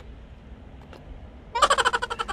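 Low outdoor background rumble, then about one and a half seconds in a woman laughs loudly in a quick string of high-pitched 'ha' pulses.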